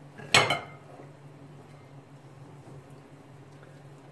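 A single sharp clank of a stainless steel pot knocking against a serving bowl as boiled greens are tipped out of it, with a short metallic ring. A faint steady low hum runs underneath.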